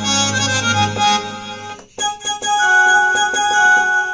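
Roland XPS-30 keyboard playing a harmonium sound: a melody line over held chords, a brief break just before halfway, then long sustained notes.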